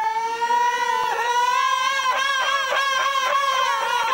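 Men's voices of an Ahidous troupe holding one long, high sung note of an izlan chant. The pitch rises slowly and begins to waver about halfway through.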